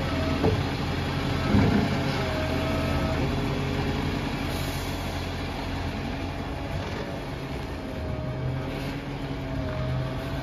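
Side-loader recycling truck emptying a wheelie bin with its automated arm: two knocks as the bin is tipped, the louder about a second and a half in, over the diesel engine running with a whine that comes and goes. The truck then pulls away with the engine running steadily.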